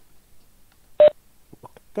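A single short electronic beep about a second in, the chime of the video-meeting app as the microphone is switched to mute.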